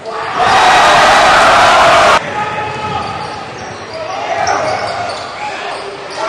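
Crowd cheering loudly in an indoor gym. The cheer cuts off abruptly about two seconds in, then gives way to quieter crowd noise and voices.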